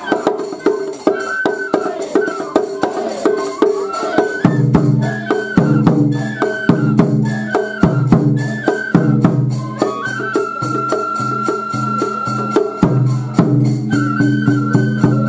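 Japanese folk festival music (hayashi): a high flute melody over steady drum and percussion beats, with one long held note near the end.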